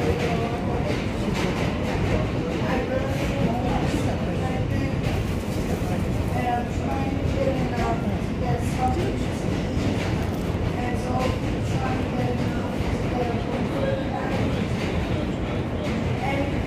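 Steady rumble and rattle of an R160A subway car running along the track, heard from inside the car.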